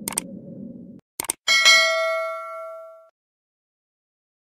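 Subscribe-button animation sound effect: a short whoosh, then two quick mouse clicks about a second in, followed by a bright notification-bell ding that rings out for about a second and a half.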